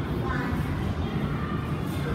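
A child's voice, faint and brief near the start, over a steady low rumble of room noise.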